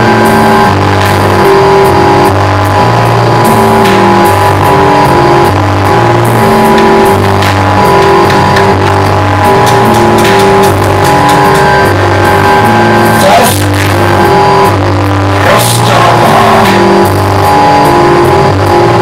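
Loud live band music without vocals: low notes move in steady steps under held higher drone tones. A few brief noisy swells rise above it.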